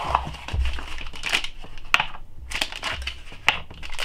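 Plastic packaging being handled: a rigid plastic drive tray and an anti-static bag crinkling and crackling as a hard drive is pulled out, with a few sharp plastic clicks.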